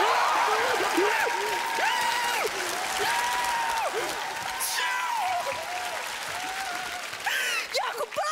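Studio audience applauding and cheering a stunt that has just succeeded, with excited shouting over the clapping. The applause dies down gradually.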